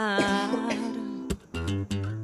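Acoustic guitar accompanying a song, with a woman's voice trailing off on a falling note at the start. Then held guitar notes and a few sharp strums in the second half.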